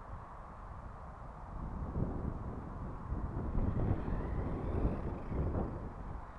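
Wind buffeting the microphone as a low rumble, growing stronger about a third of the way in, with the faint rising whine of a distant small electric RC car motor near the middle.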